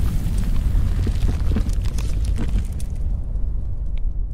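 A fiery logo-reveal sound effect: a loud, deep rumble with crackling like flames and sparks. The crackles thin out after about three seconds while the rumble goes on.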